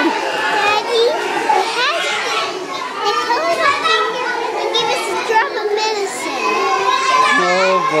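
Many schoolchildren talking and shouting at once in a crowded classroom: a continuous din of overlapping young voices.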